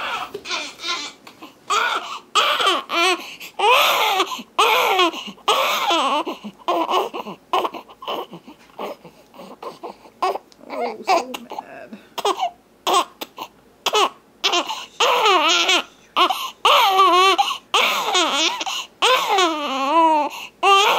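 Newborn baby girl crying hard in repeated wails, each a second or less with short breaks for breath between, some cries shaky and wavering in pitch.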